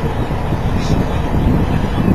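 Steady low road and engine noise heard from inside the cabin of a moving car.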